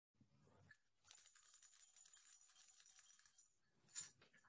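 Near silence, with a faint, high rustling or jingling in the middle and a short click at the very end.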